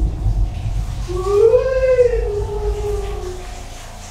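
A person meowing like a cat: one long, drawn-out wail that starts about a second in, rises, then falls and fades over about two seconds.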